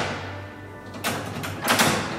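An original 1850s key-operated door lock being worked so its bolt is thrown: two short metallic sliding clacks, one about a second in and a louder one near the end.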